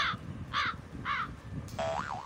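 A crow cawing three times, evenly spaced about half a second apart, each caw short and harsh. Near the end a wobbling, cartoon-like electronic tone begins.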